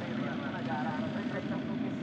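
Race-circuit ambience: the distant engines of Formula 4 cars running on the formation lap, with faint crowd voices.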